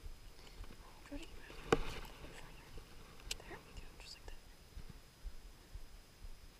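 Faint whispered muttering, with a sharp click about two seconds in and a thin tick a little past halfway from hands working a spinning rod and reel.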